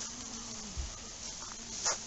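A flying insect buzzing close by, its low hum wavering up and down in pitch and breaking off just under a second in with a soft low bump. A brief sharp knock comes near the end and is the loudest sound.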